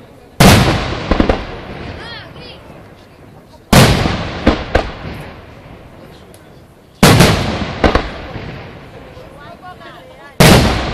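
Aerial fireworks shells bursting during a fireworks display finale: three loud bangs about three seconds apart. Each bang is followed by a couple of smaller pops and a long rolling fade.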